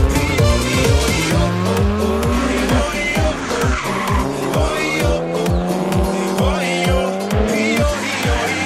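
Electronic dance music with a steady kick-drum beat, about two beats a second, laid over rally cars racing through a tight bend. Their engines rev and their tyres squeal as they slide through the corner.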